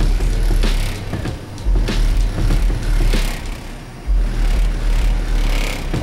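Car stereo subwoofers playing bass-heavy music very loud, heard through a store's glass doors: deep bass notes that drop out briefly about a second in and again near four seconds, with sharp hits over them.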